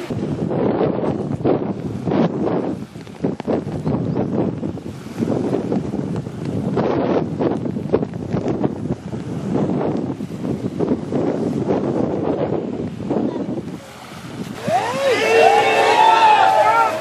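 Wind buffeting the microphone in irregular gusts. Near the end, a group of men shout together as they start into the sea.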